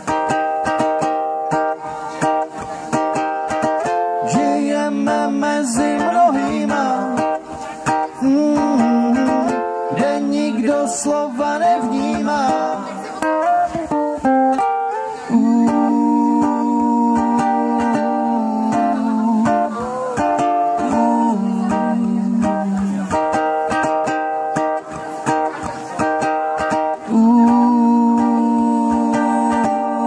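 Live acoustic band music without vocals: a strummed ukulele under a lead line of long, steady held notes that step from pitch to pitch.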